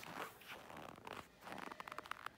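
Footsteps crunching on dry, hard-frozen snow at about minus thirty, a few uneven steps with a run of small crisp clicks near the end.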